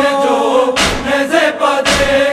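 Urdu noha: male voices chanting a mourning lament, over a deep percussive beat that falls about once a second.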